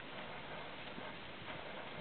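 Appaloosa horse galloping on grass: faint, dull, irregular hoofbeats over a steady background hiss.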